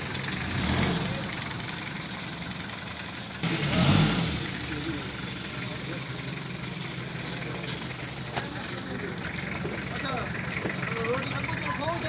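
Pickup truck engine idling steadily, with a brief louder burst about three and a half seconds in. Faint voices come in near the end.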